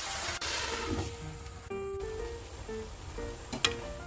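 Vegetables with a little added water sizzling in a frying pan, the sizzle strong for about a second and then dying down, under light instrumental background music. A couple of sharp taps near the end.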